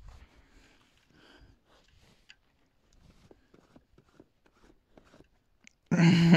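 Faint, irregular small clicks and rustles of a horned sheep nuzzling and mouthing close against the microphone, with a short knock at the start.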